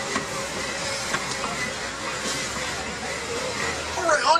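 Steady running noise of a moving open-sided safari ride truck: engine and road rumble under a constant hiss.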